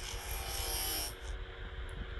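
Processed sound effect made from a spinning metal kettle lid, pitched down, reversed and time-stretched. It plays as a low steady hum with an airy hiss over the first second or so.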